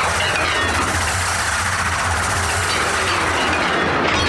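Soundtrack of a tokusatsu hero show's transformation scene: music mixed with a steady, train-like rumble and whooshing sound effects.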